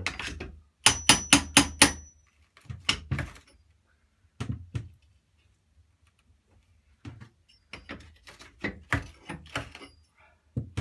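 Hammer blows on a chisel, chipping old ceramic wall tiles off: a quick run of about five sharp strikes about a second in, then scattered single knocks.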